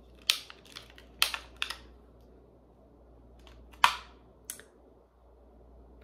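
Thin plastic clamshell pack of a Scentsy wax bar being pried open: about six sharp plastic clicks and cracks at uneven intervals, the loudest about two thirds of the way through.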